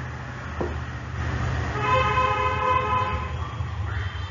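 A horn sounding one long steady note for about two seconds, starting about a second in, over a low steady hum.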